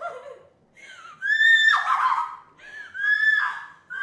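A woman's high-pitched shrieking cries in a staged acting performance: a short cry at first, then two long held shrieks, the first of them the loudest.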